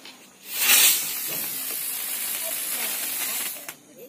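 A 'drone' Diwali firework burning with a loud, steady hiss that swells up about half a second in and holds for about three seconds before dying away, with a sharp click near the end.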